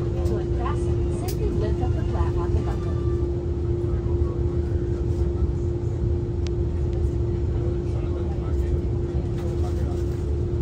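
Steady Airbus A330 cabin noise: a constant low rumble with a steady hum. Faint voices are heard in the first few seconds.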